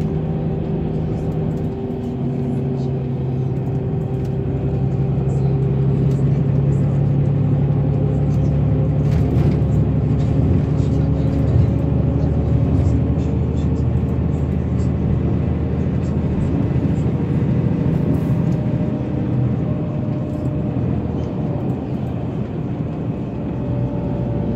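Steady engine drone and road noise inside a moving bus at cruising speed. The engine note steps down about two seconds in, then holds steady.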